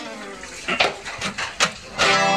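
Acoustic guitars stop and their last chord rings away, leaving a short break in the music. The break is broken by a few sharp clicks or knocks, the loudest about a second in and again near the end.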